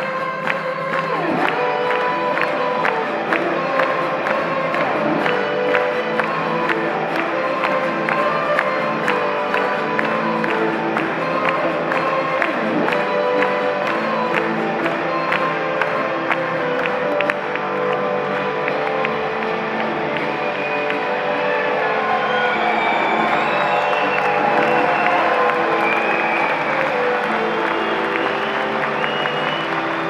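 Live acoustic band playing an instrumental passage: strummed acoustic guitar, mandolin and lap steel guitar in a steady rhythm, with the audience clapping and cheering, the crowd noise growing in the last third.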